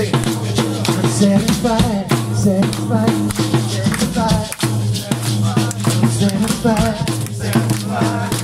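Rock'n'roll band singing an a cappella number live: a wavering sung lead line over steady low harmony voices, with a regular percussive beat.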